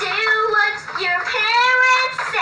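Young girl singing her own song in long held notes that slide up and down in pitch.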